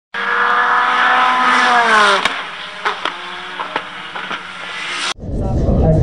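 A race car engine sound with several pitches together that slide down about two seconds in, then a quieter stretch with scattered clicks. It cuts off abruptly about five seconds in. A Ford Mustang GT's V8 follows, idling with a deep rumble.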